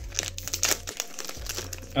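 Foil wrapper of a Pokémon card booster pack crinkling as it is torn open and the cards are pulled out.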